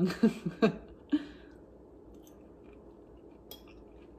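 A person quietly chewing a mouthful of soft spaghetti squash casserole, with a faint click about three and a half seconds in.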